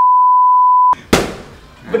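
A steady single-pitch censor bleep lasting about a second, with all other sound cut out beneath it, followed a moment later by one sharp smack.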